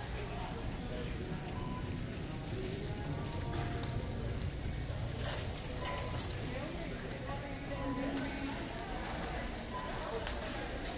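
Big-box store ambience: faint in-store background music and indistinct voices over a steady low rumble, with a few brief clicks.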